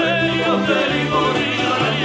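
Live Georgian pop song: a man singing a wavering, melismatic line over a strummed panduri, electric bass and keyboard, with the bass moving from note to note about twice a second.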